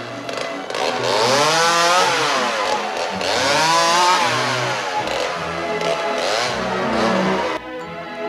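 A chainsaw revving up and down, its pitch rising and falling twice, then cutting off suddenly near the end.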